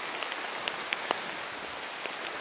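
Steady rain falling, with scattered individual drops ticking.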